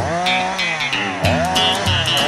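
Chainsaw cutting a log, its engine pitch falling twice as it slows, mixed with a country song with guitar and a steady beat.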